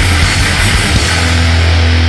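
Fast hardcore punk (powerviolence) band recording: rapid drumming and distorted guitar, which about a second in give way to one held, distorted chord ringing out.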